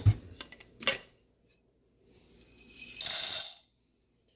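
Whole coffee beans poured from a ceramic ramekin into a Lelit coffee grinder, rattling in quickly for about half a second near the end. A knock and a few light clicks come first, as the ramekin is handled.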